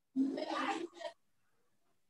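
A short wordless vocal sound from a person, under a second long, followed by a brief second one.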